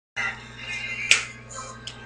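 Faint music with a single sharp snap about a second in, and a softer one near the end.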